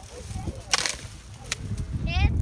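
Thin stems of a desert shrub being pulled and stripped by hand: a short rustling swish a little before a second in, then a sharp snap about a second and a half in.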